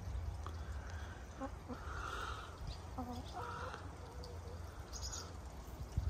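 Backyard hens giving a few faint, short clucks about two to three and a half seconds in, over a low steady rumble.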